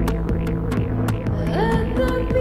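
Live electronic pop played on synthesizers: a steady low bass drone under a regular ticking beat, about four ticks a second. About one and a half seconds in, a pitched note glides upward and holds.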